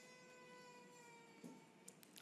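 Near silence, with a faint, sustained tone that slowly falls in pitch and fades out near the end.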